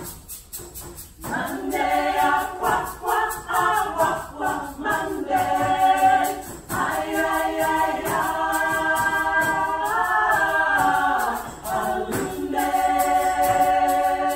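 Women's vocal group singing together in harmony over a steady light beat, coming in strongly about a second in after a brief lull.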